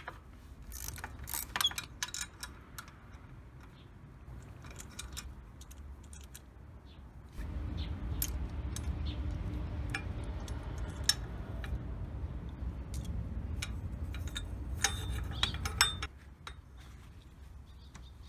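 Irregular metallic clicks and clinks of a 12 mm socket wrench and extension working the exhaust header nuts on a Honda CRF250L, with a few sharper clinks near the end. In the middle a steady low rumble starts suddenly and stops just as suddenly.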